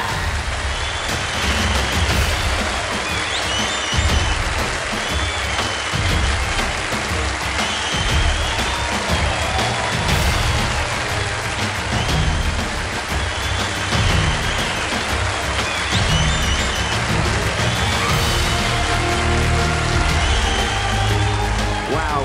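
Loud music with a heavy pulsing bass, played over steady applause from a large audience.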